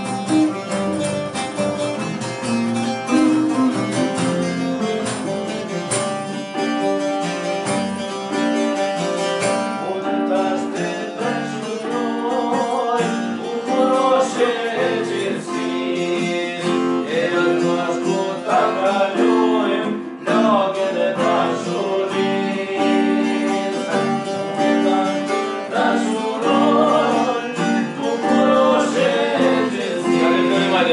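Live home jam of an Albanian folk song on electric and acoustic guitars with a hand frame drum; a man's singing comes in about ten seconds in and carries on over the playing.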